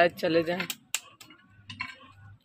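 A woman's voice for the first moment, then a few sharp, light clinks or ticks.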